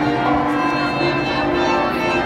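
Church bells ringing in the basilica bell tower, many overlapping tones sounding together and ringing on.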